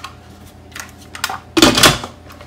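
Instant Pot lid being put on the pot: a few light clicks, then a loud clatter near the end as the lid seats and is turned to lock.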